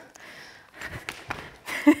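A few light taps of a skipping rope slapping a hard sports-hall floor and shoes landing during cross-cross jumps, then a short laugh at the end.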